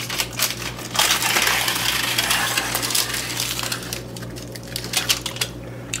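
Metal spoon scraping and clinking against a parchment-lined baking sheet, working loose crisp bacon bits: a dense run of scratchy clatter starts about a second in and thins out after about four seconds.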